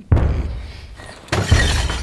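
Two loud crashing impacts, like things being smashed, about a second and a quarter apart, each followed by a short dying rattle.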